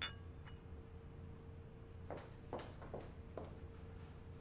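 A small ceramic cup set down on a stone countertop: a single ringing clink, then a lighter tap about half a second later. A few soft scuffs follow between about two and three and a half seconds in.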